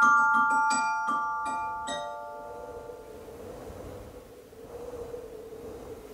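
Glockenspiel struck with mallets: a short run of about six bright ringing notes in the first two seconds, then the notes ring away. A faint steady tone and soft hiss remain after that.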